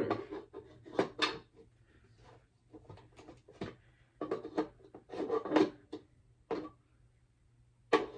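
Handles of a plastic push-up board being pulled out and set into different slots: a string of irregular plastic clicks and knocks with short pauses between them.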